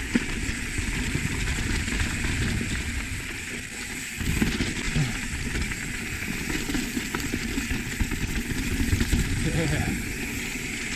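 Wind rushing over an action camera's microphone and mountain-bike tyres rolling over dirt and rock on a fast singletrack descent, a steady noise with a short dip about four seconds in.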